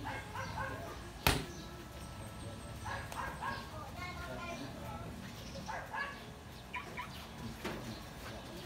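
A single sharp smack of a boxing glove landing on a trainer's punch mitt about a second in, during pad work, over faint background voices.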